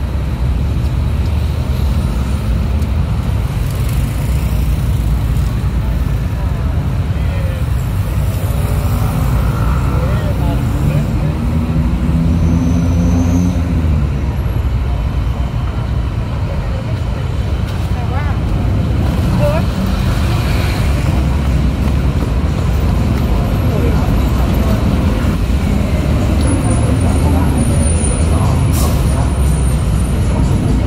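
Busy city street traffic: a steady low rumble of cars, motorcycles and buses, with one engine rising and falling in pitch about halfway through, and passersby talking.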